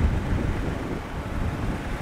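Wind buffeting the microphone outdoors: an irregular low rumble with no clear engine note.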